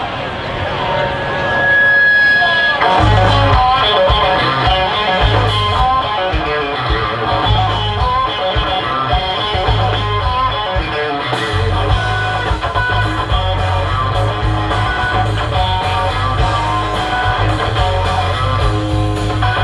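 Live rock trio playing an instrumental passage on electric guitar, bass guitar and drum kit. The electric guitar plays on its own at first, and the bass and drums come in about three seconds in.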